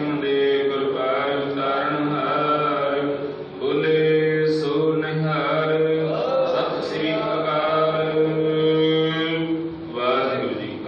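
Sikh devotional chanting (simran): long, steady chanted notes, with a brief pause about three and a half seconds in.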